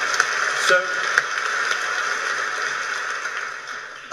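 Audience applauding in a large hall, heard from a played-back debate recording; it dies down near the end.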